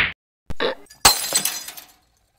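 Glass-shattering crash sound effect for a falling framed painting. A short burst comes about half a second in, then a loud smash about a second in that rings out and fades over nearly a second.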